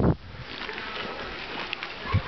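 A brief low wind rumble on the microphone at the very start, then a faint, steady outdoor background hiss.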